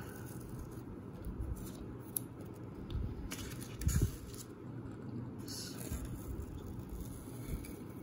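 Masking tape being peeled slowly off a painted plastic model hull: faint rustling and crackling as it lifts, with flakes of dried white paint breaking away from the tape. There is a soft knock about four seconds in.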